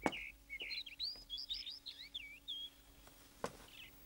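Small birds chirping: a quick run of short, high chirps through the first two and a half seconds, then a single footstep near the end.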